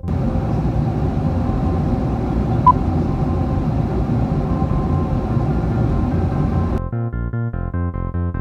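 Airliner cabin noise: a steady rumble and rush of jet engines and airflow heard from a window seat over the wing, with one brief high beep about a third of the way in. Rhythmic synthesizer music cuts back in near the end.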